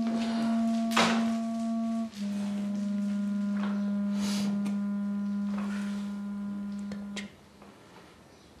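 Background score music: a woodwind holding long, low notes, stepping down in pitch about two seconds in and stopping about seven seconds in.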